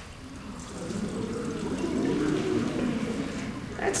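Liquid being poured into a glass funnel and trickling down through a glass spiral tube into a flask, a steady pouring sound that starts about half a second in and lasts until just before the end.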